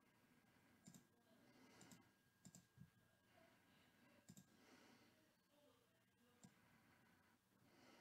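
Near silence: faint room tone with a handful of soft, scattered clicks.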